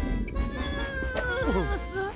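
An animated character's whining, wordless cry: a held note that slides slowly down in pitch and then drops steeply near the end, over background music.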